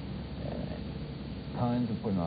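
Low steady hum and hiss of an old interview recording in a pause between sentences, with a man's voice starting to speak again near the end.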